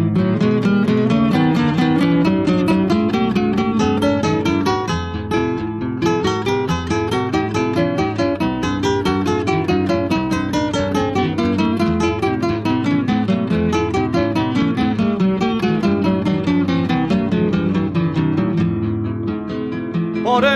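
Acoustic guitar playing a fast instrumental introduction: rapid plucked notes in rising and falling runs over bass notes, with some strumming.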